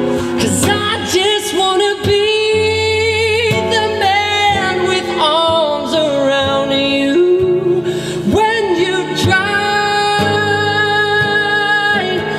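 A male voice sings long, wavering held notes over a strummed acoustic guitar. One long note is held from about two-thirds of the way through to the end.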